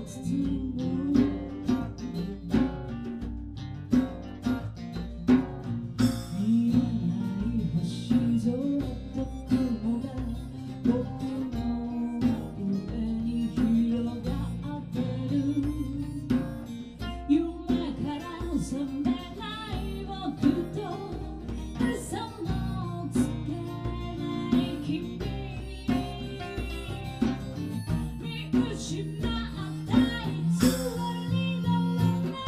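Live acoustic band: several acoustic guitars strummed in a steady rhythm, with a woman singing over them through a microphone.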